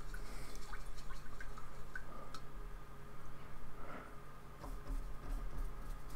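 Soft, wet dabbing and stroking of acrylic paint being worked across the paper, with scattered small clicks, over a steady low electrical hum.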